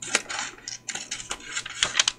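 Paper and washi tape being handled: crinkling rustles broken by several small sharp clicks.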